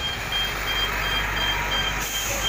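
A heavy truck's warning beeper sounding an even series of short high beeps, about three a second, over the truck's engine running close by and street traffic.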